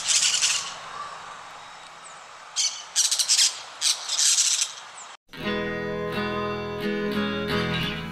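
Parrots squawking in several harsh, high-pitched bursts over a faint hiss through the first five seconds. A little after five seconds in, the squawking stops and acoustic guitar music starts abruptly.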